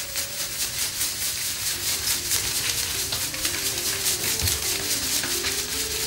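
Hand-sanding of a sculpture with a pad or cloth: quick, even rubbing strokes repeating several times a second, over soft music with slow stepped notes.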